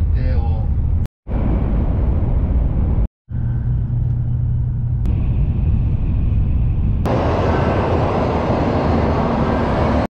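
Running noise of an N700-series Shinkansen heard from inside the passenger car: a steady low rumble with rushing noise. It comes in short clips joined by abrupt cuts, with the sound dropping out briefly at about one second and three seconds in. From about seven seconds on it turns into a brighter, hissier rush.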